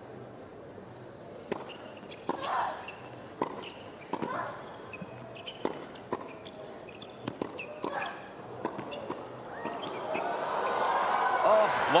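Tennis rally on an outdoor hard court: a string of sharp racket-on-ball strikes, with short shoe squeaks and brief shouts from the players. Near the end the crowd swells into cheering and applause as the long point finishes.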